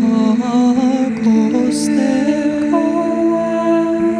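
Ambient music: a wordless, humming voice wavering in pitch over a steady low drone.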